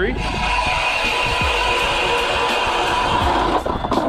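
StrikeMaster Lithium 40V battery-powered ice auger drilling a hole through about three to four inches of lake ice: a steady electric motor whine with the bit grinding through the ice, cutting off near the end.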